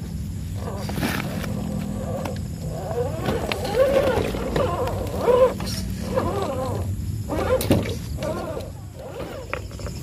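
RC rock crawler's electric motor and gearbox whining in repeated throttle bursts, the pitch rising and falling as it crawls over wet rocks.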